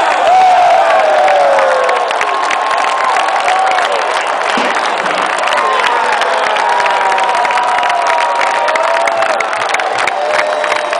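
Large stadium crowd cheering and yelling after a home-team touchdown, with hands clapping close by. Loudest in the first two seconds, then easing slightly.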